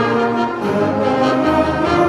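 A high school concert band with string players performing live, holding sustained chords that change every half second or so.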